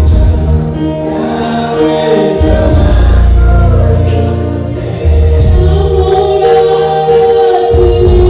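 Live amplified gospel worship music: a group of voices singing together over an electronic keyboard playing deep bass notes and chords, with a steady beat.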